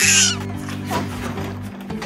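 An elephant trumpeting sound effect, high-pitched and loud, ending about half a second in. Background music with steady tones plays throughout.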